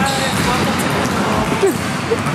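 Unclear voices and laughter over a loud, busy indoor background, with dull thumps about once a second.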